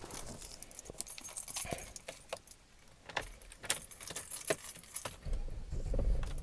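Car keys jangling and clicking as they are handled at the ignition, in a run of short rattles. Near the end a low rumble sets in as the car's engine starts.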